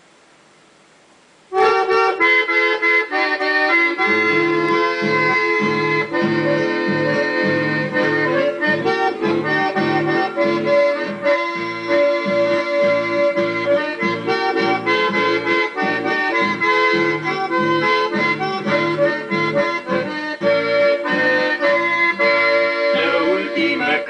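Chamamé instrumental introduction led by accordion. It starts suddenly about a second and a half in after faint hiss, and low notes join about two seconds later with a steady pulsing rhythm.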